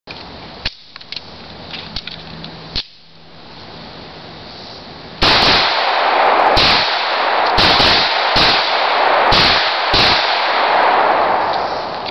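9mm pistol fired about six times in quick succession, roughly one shot a second, starting about five seconds in. The noise of each shot carries on loudly until the next.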